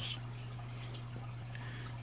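Turtle tank's filter running: a steady low hum with faint trickling water.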